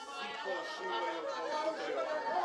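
A congregation praying aloud at once, a jumble of many overlapping voices under no single lead voice.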